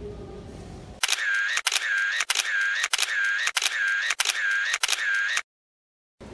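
Camera shutter sound effect, the same click-and-whirr repeated about seven times in quick succession, loud and clean, then cut off abruptly. It is an edited-in effect marking a run of snapshots.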